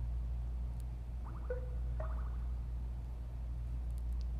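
Steady low hum of room tone, with two faint, short pitched sounds about one and a half and two seconds in.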